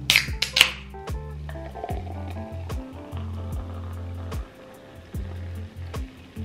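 Background music with a steady bass beat. At the very start an aluminium Coca-Cola can is cracked open with a short sharp hiss, and later the cola is poured fizzing into a glass.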